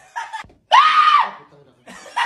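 A person's high-pitched scream of fright, loud and about half a second long, coming a little under a second in after a brief vocal outburst.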